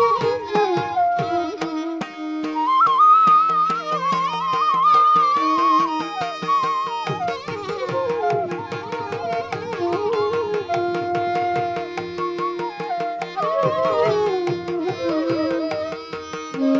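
Two transverse bamboo flutes playing a Carnatic melody with sliding, ornamented notes over a steady tanpura drone, with fast hand-drum strokes throughout.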